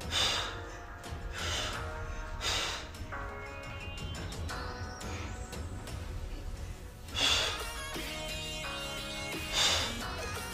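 Background music playing, broken by about five loud, sharp exhaled breaths taken with effort during an abs exercise.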